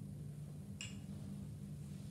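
One short, bright click a little under a second in as a backboard's strap and metal buckle are handled, over a steady low room hum.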